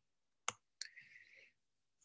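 Two faint computer clicks about a third of a second apart, the first about half a second in, followed by a short soft hiss: the click of advancing a presentation slide.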